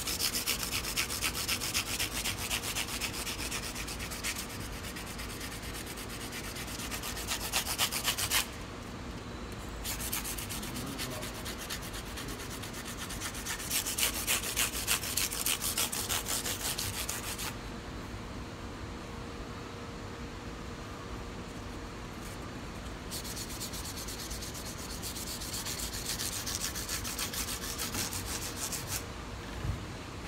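Fret ends along the edge of a guitar fretboard being hand-sanded with 400-grit sandpaper in quick back-and-forth strokes, rounding over the sharp edges of the frets. The scraping comes in several passes with short pauses between, the longest pass about ten seconds in.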